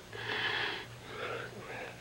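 A person's audible, unsteady breathing: one long breath about half a second long, then two shorter ones, the kind of emotional breath taken before speaking through tears.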